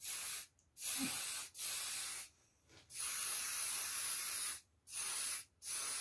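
Aerosol spray-paint can spraying a lamp shade in about six separate bursts of hiss, with short silent gaps between them; the longest burst lasts nearly two seconds in the middle.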